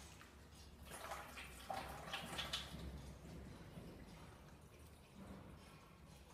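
Water pouring from an upturned plastic bottle into a funnel and down a tube into the machine's water tank, faint and uneven, strongest about one to three seconds in.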